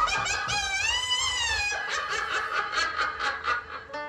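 Electronic keyboard playing a lead line alone, without drums: a long note that bends up and back down about a second in, then a quick run of short repeated notes.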